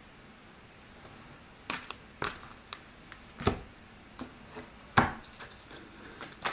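Deck of tarot cards being handled and shuffled: a run of sharp, irregular card snaps and taps starting about two seconds in, after a quiet start.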